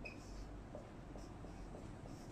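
Faint strokes of a marker pen writing on a whiteboard, a few short scratches over a low steady hum.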